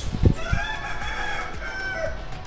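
A faint, drawn-out animal call that rises and falls over about a second and a half.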